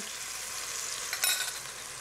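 Chicken broth sizzling steadily in a hot enameled cast-iron Dutch oven, just poured over the chicken drippings. A brief clink comes about a second in.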